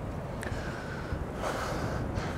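Low wind rumble on the microphone, with a man's short intake of breath about a second and a half in.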